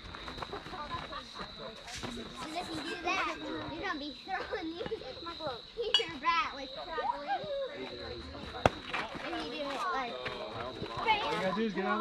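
Overlapping voices of children and adults talking and calling out at a youth baseball game, with a steady high tone underneath and one sharp knock about three-quarters of the way through.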